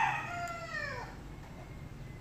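The end of a rooster's crow: its last drawn-out note falls in pitch and stops about a second in.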